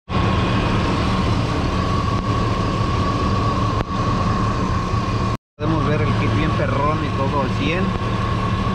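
2002 Chevrolet Silverado pickup's engine idling steadily under the open hood, with a steady high whine over the idle. The sound cuts out briefly about five and a half seconds in.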